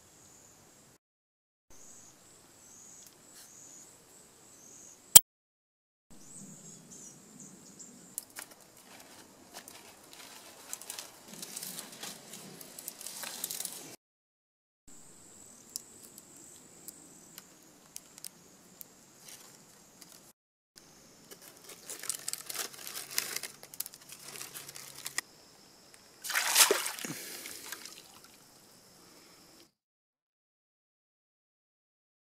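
Dry grass and vine being handled and woven into a fish basket: rustling and crackling in several short clips split by brief silences, over a steady high-pitched whine. There is a single sharp click about five seconds in, and a louder rush of noise near the end.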